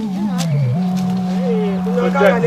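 Background music: a long held low keyboard note that moves up in pitch about three-quarters of a second in, with higher sliding, wavering tones over it.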